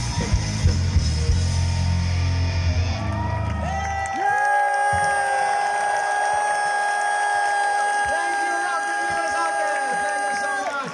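Live rock band playing electric guitars over bass and drums. About four seconds in, the bass and drums drop out and the guitars slide up into a long sustained chord that keeps ringing, as at the close of a song.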